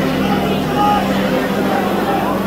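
Live rock band playing in a concert hall, mixed with audience voices close to the recording phone.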